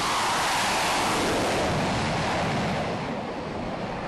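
F/A-18 jet's engines at full power during a catapult launch off an aircraft carrier deck: a steady rushing noise that eases off near the end as the jet pulls away.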